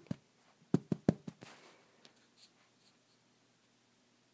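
Three sharp clicks about a second in, followed by a soft brief rustle and a few faint ticks, then quiet room tone.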